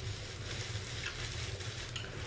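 Steady faint hiss with a low hum underneath: room tone.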